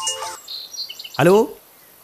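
A mobile phone's music ringtone cuts off shortly after the start as the call is answered, followed by a few short, high bird chirps.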